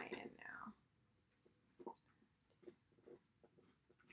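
A woman's voice for a few words at the start, then near silence broken only by a few faint, short ticks and rustles.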